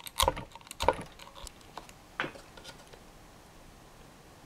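Handling noise: a few sharp clicks and light knocks of a hand and a thin tool at the print and the glass print bed, the loudest about a quarter second, one second and two seconds in.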